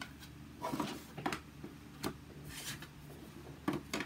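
Hard plastic embossing plates and an embossing folder being handled and set on a die-cutting machine's platform: a few light clicks and taps, with a short rustle of cardstock about two and a half seconds in.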